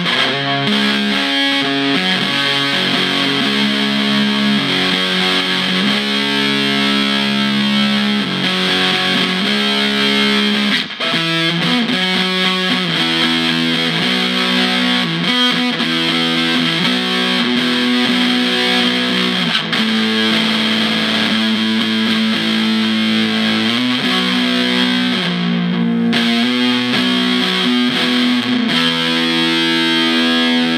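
Electric guitar played through a Gorilla GG-110 solid-state combo amp with a distortion pedal: heavily distorted, sustained chords and notes changing every second or two, with a brief break about eleven seconds in.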